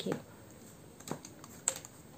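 A few faint clicks of card edges snapping against each other as oracle cards are pulled from a hand-held deck, the sharpest one a little before the end.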